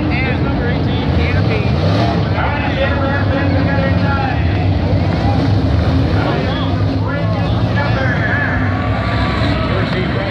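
Dirt late model race cars' V8 engines running on the track, the engine pitch rising and falling.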